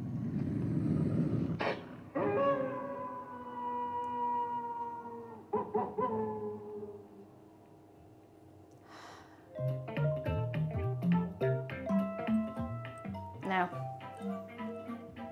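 Werewolf sound effect played from a Google Home smart speaker: a growl, then a long howl falling slowly in pitch, with a few sharp knocks near the end of it. About ten seconds in, music with plucked notes starts.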